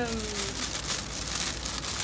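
Shredded paper filler crinkling and rustling under the hands as small items are lifted out of a gift box.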